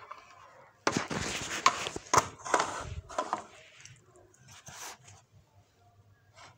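Handling noise of a clear plastic eyeshadow palette case on a stone counter: rustling and several sharp clicks and knocks for a couple of seconds starting about a second in, then a few fainter clicks.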